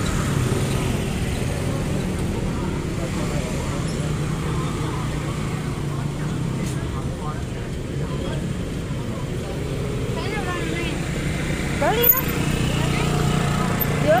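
Street traffic with motor scooter engines running close by, a steady low drone. A voice speaks briefly about twelve seconds in.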